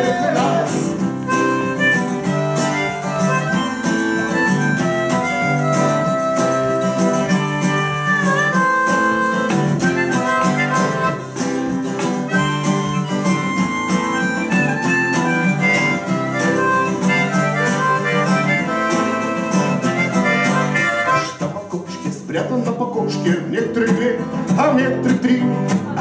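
Acoustic guitar strummed through an instrumental break between sung lines, with a sustained melody line over it that bends in pitch. The playing drops back and thins out about 21 seconds in, then picks up again just before the singing returns.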